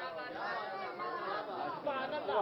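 Indistinct, low chatter of voices, with no clear words.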